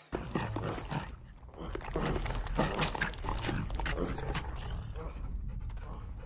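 Dog-like noises on a horror film's soundtrack, made by people who have been turned into dogs, over a steady low hum.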